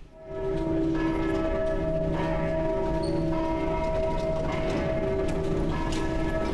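Opera orchestra coming in loudly just after the start and holding long sustained notes, several pitches sounding together as a chord.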